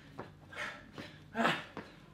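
A man breathing hard in short forceful puffs while driving his knee up at speed, with light footfalls on the gym floor about once a second.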